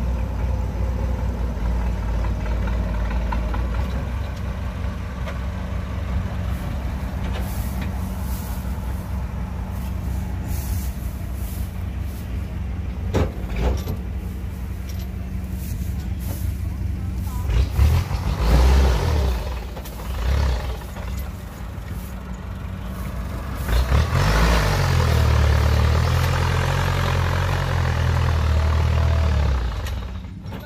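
Massey Ferguson 185 tractor's diesel engine labouring under load as it tries to drag a mud-bogged trailer of rice sacks up out of the field. It revs up hard briefly about eighteen seconds in, then again from about twenty-four seconds until near the end. The tractor is struggling to climb, its add-on front-wheel drive not getting it up.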